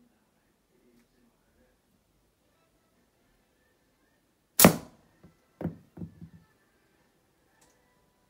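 A slingshot shot: a single sharp crack as the bands release and an 8.4 mm lead ball strikes a hanging aluminium drinks can, denting it. About a second later come three lighter knocks in quick succession.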